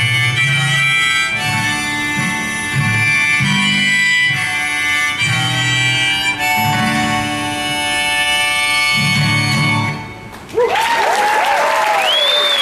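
Harmonica in a neck rack played over strummed acoustic guitar, ending the song. The music stops about ten seconds in, and the audience breaks into applause.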